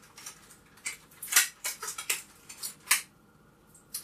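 Small metal control plate of a Telecaster-style guitar kit being unwrapped and handled: a series of light metallic clinks and rustles of packaging.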